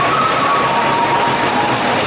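A tune playing over the stadium PA system, a melody stepping between a few notes, mixed with the steady noise of a large crowd.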